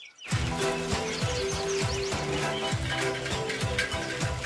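Background music starts about a quarter second in: a bright melody over a bass line, with a regular beat.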